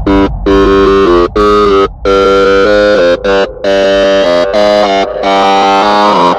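Dark psytrance music: a synthesizer line of quick stepping notes, cut by brief gaps, over a steady low bass.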